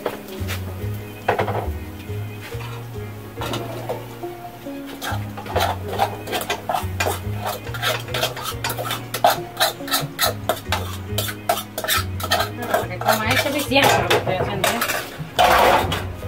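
Dishes and kitchen utensils clinking and knocking as a plate and pans are handled. The knocks come thick and fast from about five seconds in, over background music with a steady bass line.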